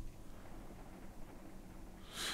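Faint room tone with a low steady hum and no distinct event.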